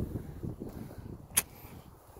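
Low, uneven rumble, as of wind or handling on the microphone, fading out, with one sharp click about one and a half seconds in.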